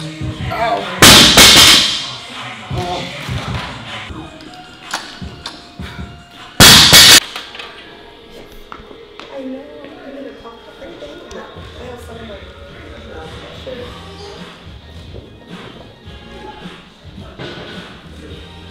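A loaded barbell with rubber bumper plates dropped onto the lifting platform, giving a loud crash about a second in and another around seven seconds, over background music.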